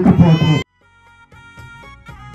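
A woman's amplified voice through a microphone, cut off abruptly under a second in; after a brief gap, soft instrumental music with steady notes begins.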